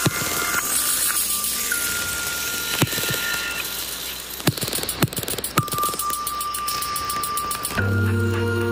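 A DJ mix played on turntables, at a stripped-down breakdown: a hissing wash of noise with a few long, thin held tones and scattered clicks, and almost no bass. Near the end the deep bass and chords come back in.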